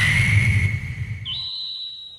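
Anime-style flying sound effect of a character zipping past. A sudden loud rumbling whoosh carries a steady high whistle that jumps up in pitch a little past a second in, then fades.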